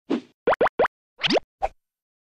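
Short cartoon sound effects for an animated logo intro: a brief noisy burst, three quick notes sliding up in pitch, a longer upward swoop, then a short blip.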